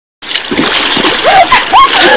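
Water splashing, with a few short high-pitched vocal cries over it in the second half.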